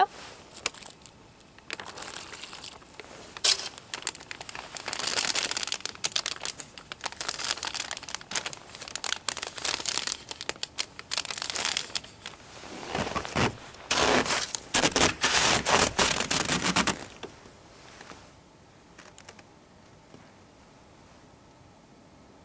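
Plastic flameless heater bag crinkling and rustling as it is handled, in irregular bursts that stop about seventeen seconds in.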